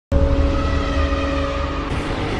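Intro sound effect: a loud hit that starts suddenly and opens into a dense rumbling swell with a few held tones over it, easing off slightly toward the end.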